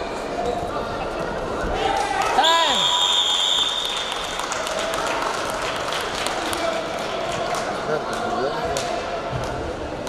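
Arena time-up signal at the end of a wrestling bout: one high steady electronic beep lasting about a second and a half, starting a couple of seconds in as the match clock reaches zero. A falling swoop comes just as it begins, over hall chatter and thuds on the mat.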